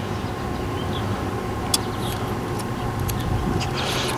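Steady low background rumble with a faint steady tone above it, and one small click a little under two seconds in.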